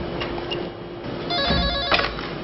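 Telephone ringing: a short electronic trilling ring that starts about a second and a half in and stops just before the end.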